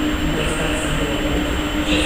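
Škoda-built Czech Railways class 163 electric locomotive approaching along a station platform with its train. It makes a steady low rumble with a constant hum.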